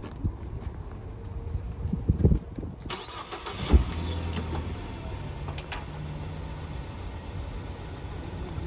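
Car engine idling: a steady low hum that sets in about four seconds in, just after a sharp knock.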